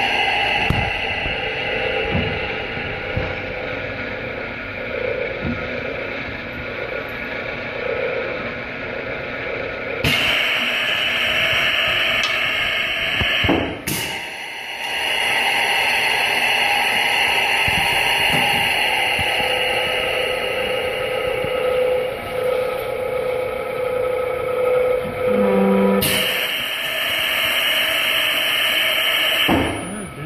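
Grotens 1LS weld planisher running: its electric drive motor and gearbox run steadily as the roller travels along a steel strip, flattening the weld seam. The sound changes abruptly a few times, around a third of the way in, in the middle and near the end.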